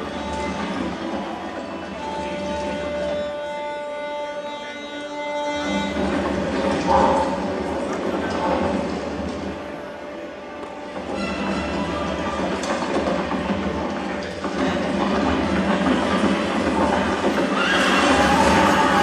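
A film battle-scene soundtrack played over hall loudspeakers: a cavalry charge of galloping horses with whinnies, mixed with music and voices, growing louder towards the end.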